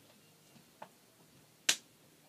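Plastic water bottle being opened: a faint click a little before halfway, then one sharp, loud crack of the plastic near the end.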